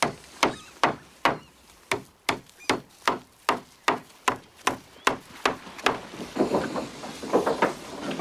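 Evenly spaced sharp knocks on wood, about two and a half a second, each with a short ring. In the last two seconds they give way to a softer, denser jumble of knocking.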